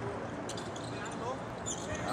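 Basketball dribbled on a hardwood court, a few sharp bounces echoing in a large, empty gymnasium, with faint voices in the background.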